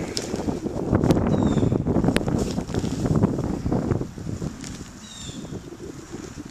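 Wind rumbling on the camera microphone, with crackling and rustling, dying down after about four seconds.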